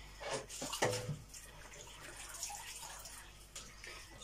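Quiet kitchen handling sounds: two light knocks in the first second, then faint water sounds, like a cloth being wetted or wrung at the sink.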